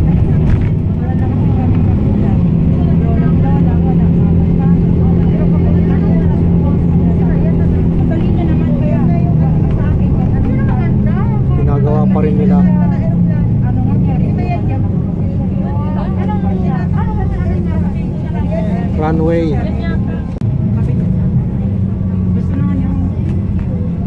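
A steady low engine drone from a motor vehicle on the way to the airport, with people's voices talking over it.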